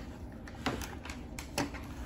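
Quiet, irregular plastic clicks and taps from plastic syringes and stopcock connectors of a shuttle set being handled and laid down, about half a dozen sharp clicks over two seconds.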